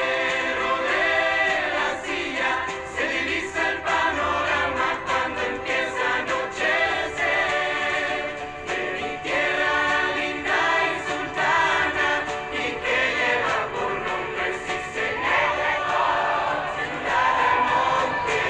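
A choir singing over instrumental backing music, steady throughout.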